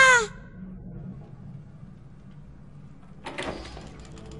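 A voice trailing off at the very start, then low, steady background ambience, broken about three seconds in by a sudden short burst of noise that fades away.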